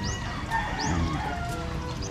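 Chickens clucking in the background, with a few short, high chirps.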